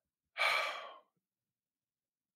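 A man breathes into the microphone: a single sigh-like breath lasting about half a second, fading out.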